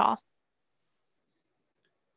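A woman's question ends on its last word, then near silence, the gated quiet of a video call, with only a very faint tick near the end.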